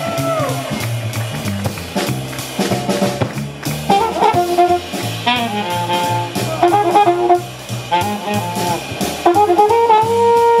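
Live jazz quartet: upright bass walking and drum kit playing with cymbals, then trumpet and tenor saxophone come in together on the melody about four seconds in.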